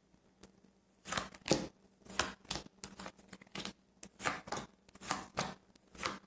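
A deck of tarot cards being shuffled by hand: a run of short, soft card snaps, about two or three a second, starting about a second in.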